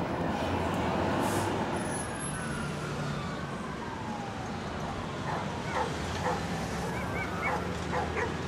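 A steady low engine hum runs throughout, with a pair of long falling whistle-like glides a couple of seconds in. In the second half come several short, high yelping calls.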